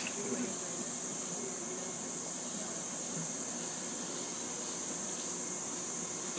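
Rainforest insects droning in a steady high-pitched chorus over an even background hiss.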